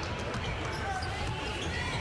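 A basketball being dribbled on a hardwood court, with the arena's live background.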